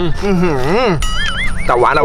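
A man's voice making a drawn-out, sliding appreciative 'mmm' while chewing, then a short warbling electronic sound effect about halfway through, before speech resumes near the end.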